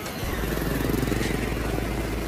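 A motor vehicle's engine running close by: a steady low rumble that comes in just after the start and holds.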